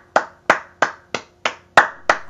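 One person clapping their hands at a steady pace, about three claps a second, six claps in all.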